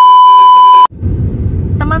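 A loud, steady, high-pitched test-tone beep of the kind played over TV colour bars, used as a transition effect; it lasts about a second and cuts off sharply. Then comes the low rumble of a car driving, heard from inside the cabin.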